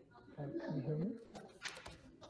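A faint, muffled voice coming over a video call, too quiet for the words to be made out.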